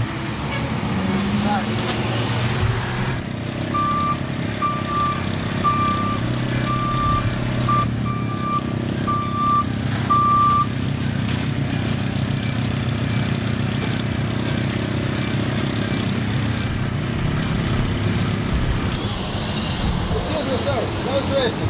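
Backhoe loader's diesel engine running steadily, with a reversing alarm sounding a run of about eight short, evenly spaced beeps on one pitch in the first half.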